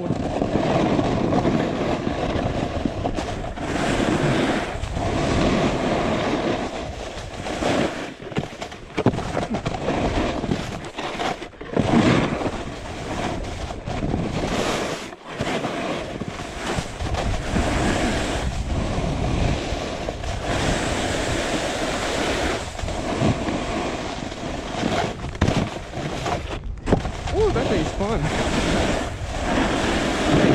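Snowboard sliding and carving over groomed snow, a continuous scraping rush mixed with wind buffeting the camera microphone, surging and dipping, with a few brief drops.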